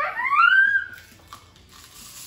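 A young child's high-pitched voice giving one drawn-out squeal that rises in pitch and then holds for about a second.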